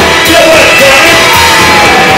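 Live rock and roll band playing loud, with a singer's voice over electric guitar and drums.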